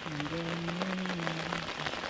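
Steady rain falling on river water, with a person's voice holding one long drawn-out note for about a second and a half over it.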